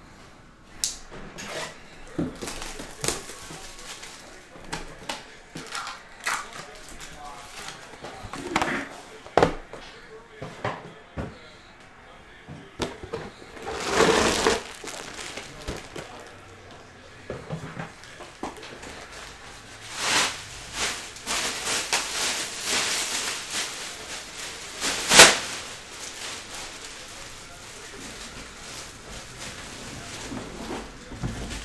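Handling noise from opening a sealed trading-card box and taking out a foil pack: a run of clicks, rustles and knocks, with a longer crinkling, tearing stretch about halfway through, a busy patch of handling after that and one sharp knock near the end.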